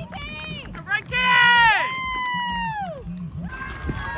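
Spectators screaming and whooping in celebration of a cleared pole-vault bar. Several long, high-pitched cheers overlap, each falling off at the end; the loudest comes about a second in, and they fade to general crowd noise near the end.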